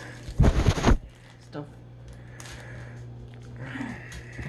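A phone camera being handled: a brief burst of rubbing and knocks on the microphone about half a second in, then a steady low hum.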